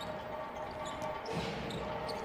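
A basketball being dribbled on a hardwood court, over a steady background of arena noise.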